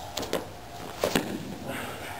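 A few short knocks and rustles from grapplers shifting their grip and bodies on the mat, about four sharp taps spread through the two seconds.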